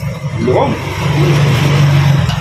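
A motor vehicle passing close by: its noise builds up over the first second and a half and eases off just after, over a steady low hum.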